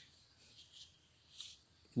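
Faint background with a thin, steady high-pitched tone and a few soft, short high chirps.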